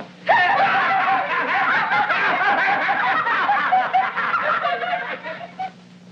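Several children laughing and giggling together, high-pitched, dying away near the end, over a steady low hum.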